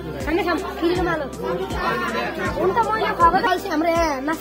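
Voices talking and chattering over background music with a regular beat.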